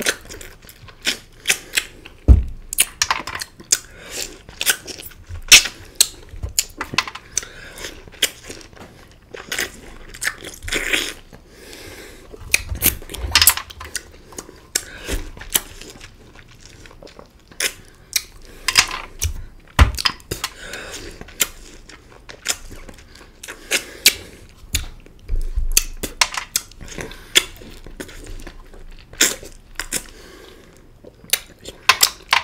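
Close-miked eating of green orange wedges: irregular wet sucking, smacking and clicking mouth sounds as the juicy flesh is bitten and pulled off the peel, with two heavier thumps, one about two seconds in and one a little before the twenty-second mark.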